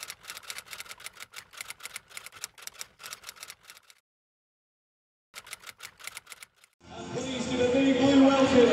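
Typewriter sound effect: rapid key clicks that stop for about a second and a half midway, then resume briefly. Stadium crowd noise swells in near the end.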